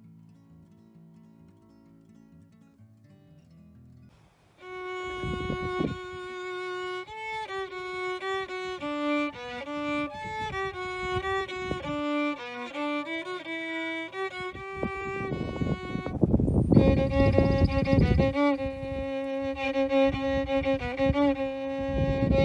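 Faint background music, then about four and a half seconds in a solo violin starts playing a melody, stepping from note to note. After a short break near the end it goes on in longer held notes.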